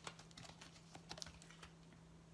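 Near silence with a few faint, light clicks and taps, a small cluster about a second in, from something being handled out of view. A faint steady hum runs underneath.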